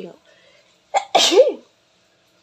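A person sneezing once, loud and close: a short intake, then a sharp voiced burst about a second in that lasts half a second.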